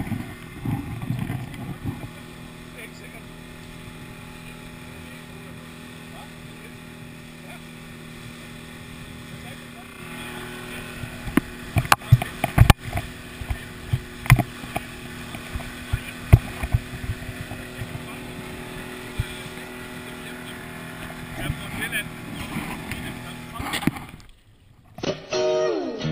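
Four-stroke Honda outboard motor running steadily as it drives an inflatable boat at speed. From about ten seconds in, sharp knocks and splashes come in as the hull slaps over the waves. The motor sound cuts off a couple of seconds before the end.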